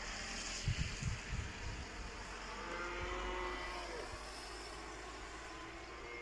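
Steady hiss of light rain and wind, with a vehicle passing on the wet road, swelling and fading around the middle.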